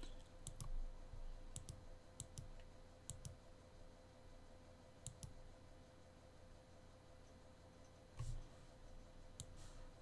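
Faint computer mouse clicks, mostly in quick press-and-release pairs, several in the first few seconds, another pair about five seconds in and one near the end, over a thin steady hum.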